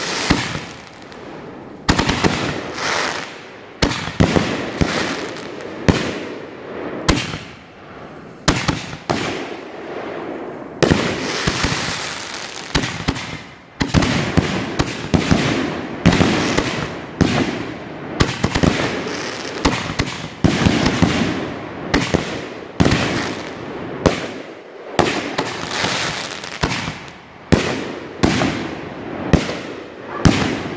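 Canister shells from a 50-shot fan rack bursting overhead in rapid succession, a sharp boom every second or so, each followed by crackling stars.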